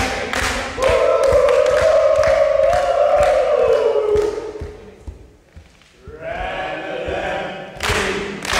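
A group of people clap in rhythm for a moment, then sing one long drawn-out note together that sinks in pitch as it fades, and after a short pause start a second held note.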